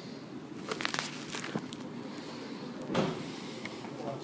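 Quiet indoor room tone with a few faint clicks and a soft bump about three seconds in, the sound of a handheld camera being moved and someone stepping on a tiled floor.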